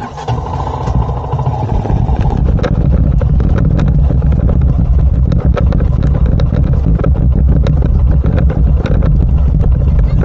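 Motorcycle engine picking up as the bike pulls away, then running steadily as it rides along a bumpy dirt track, with many short knocks and rattles.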